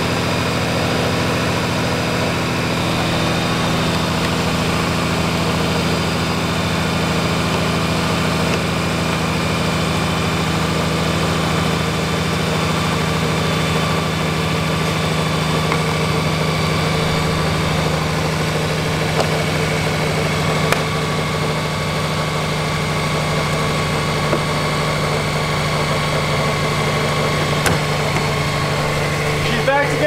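Honda Goldwing motorcycle engine idling steadily. A couple of faint clicks in the second half as a plastic side cover is pressed back into place.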